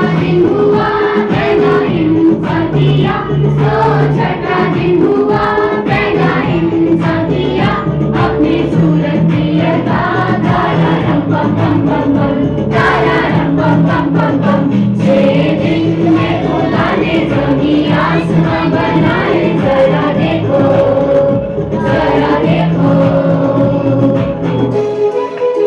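A group of voices singing together with instrumental accompaniment over a bass line.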